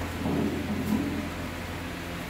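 Steady low hum of room noise, with a dull low rumble of movement or handling in the first second or so.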